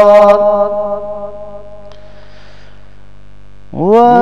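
A man's melodic chanted recitation holds a long note that fades out within the first second or so, leaving a steady electrical mains hum. Near the end the voice comes back, sliding up in pitch into a new held note.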